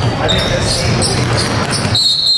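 A basketball being dribbled on a hardwood gym floor, with short high squeaks and voices echoing in the hall.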